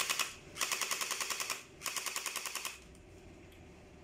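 Electric gel blaster (battery-powered hydrogel pistol) fired in full-auto bursts with no gel balls loaded: a rapid, even mechanical clatter of its motor-driven firing mechanism. Three bursts, the first ending just after the start, the other two about a second each, stopping a little before three seconds in.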